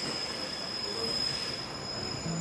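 ZSSK class 813 diesel railcar slowing into a station platform, with a steady high-pitched squeal from its wheels and brakes over the rumble of the train.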